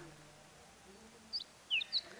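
Birds chirping: a few short, high chirps and quick falling notes in the second half, over a quiet outdoor background.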